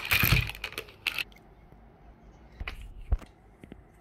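Thin plastic bag crinkling loudly as it is opened, for about the first second. Then a few light clicks and one sharper knock in the second half as hard plastic toy parts are handled and set down.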